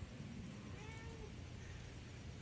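A cat meowing faintly, with a short call about a second in.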